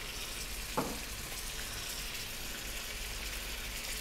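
Chopped vegetables sizzling gently in olive oil in a large pot, a steady soft hiss.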